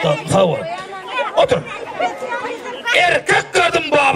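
People talking over one another in lively chatter; speech only.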